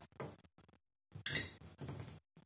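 A few short clinks and knocks of metal spoons, small metal bowls and a glass bottle on a table, separated by silences. The loudest comes about a second and a half in.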